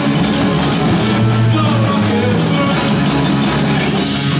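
Punk rock band playing live and loud: distorted electric guitars, bass guitar and a drum kit driving steadily.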